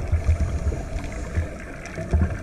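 Muffled underwater noise heard through a GoPro's waterproof housing: an uneven low rumble that swells and fades.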